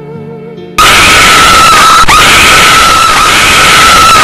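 Soft music with a wavering, vibrato melody, cut off about a second in by a sudden, very loud scream held on one steady pitch for over three seconds.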